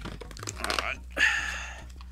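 Cardboard booster box and foil booster packs rustling and crinkling as hands open the lid and lift packs out, in two short stretches of handling noise, one about half a second in and one just after a second.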